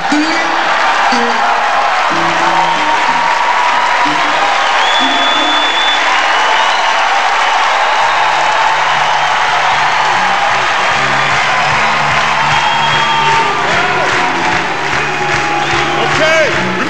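Live audience applauding and cheering over a band playing a tune.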